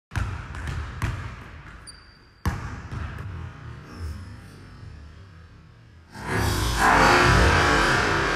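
A basketball bouncing several times on a hardwood gym floor, with a brief high sneaker squeak about two seconds in. From about six seconds in, a loud sustained noise swells up as the player runs in for the dunk.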